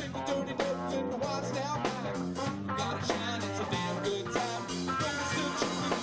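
Live rock band playing electric guitars over a steady drumbeat.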